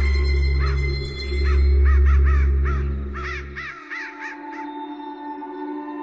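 Horror film trailer soundtrack: a loud, deep drone swelling twice and cutting off just before four seconds in, with a run of quick, repeated bird calls, about four a second, over it. A quieter steady held tone carries on after the drone stops.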